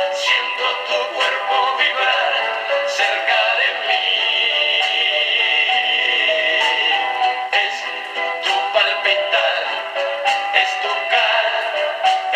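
A vintage Penny portable record player playing a 1960s vinyl record through its small built-in speaker: a singing voice over the band accompaniment, thin-sounding with no bass.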